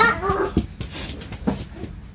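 A brief high-pitched whimpering cry at the very start, followed by a few faint short sounds.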